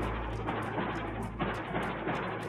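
Low-quality security-camera audio: a steady rushing street noise with faint irregular clicks, over a low droning music bed.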